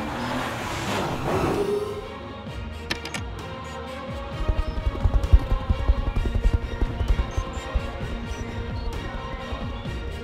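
Cartoon music with sound effects: a whooshing spin effect over the first two seconds, then from about four seconds in a fast low fluttering, the whirr of a small robot's helicopter-style propeller, which is the loudest part.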